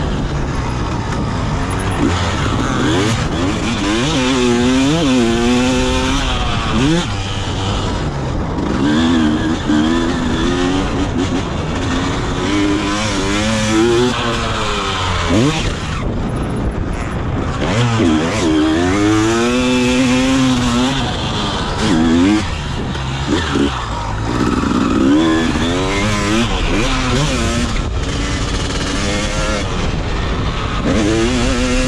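1999 Honda CR250R's single-cylinder two-stroke engine revving hard and falling back over and over while the bike is ridden, its pitch climbing and dropping every couple of seconds.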